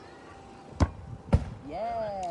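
A football kicked at a target game: two sharp thuds about half a second apart, then a voice calls out near the end.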